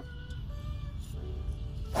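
Background music, cut off at the end by a single sharp crack of a golf driver striking the ball off the tee.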